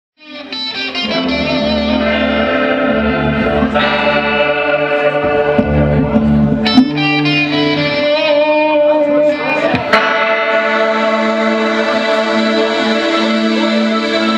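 Live punk band playing: sustained, distorted electric guitar chords over changing bass notes. The sound fades in at the very start, with a couple of sharp hits about seven and ten seconds in.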